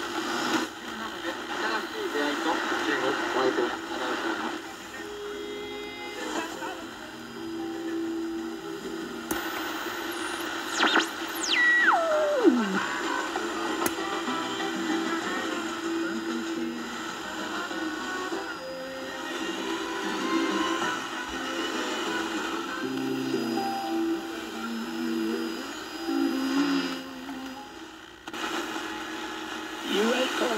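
Shortwave AM reception from a solid-state BC-455-B receiver playing through a small amplified speaker: music and a voice under static. A little before halfway through, a whistle sweeps steeply down in pitch as the tuning knob crosses a carrier.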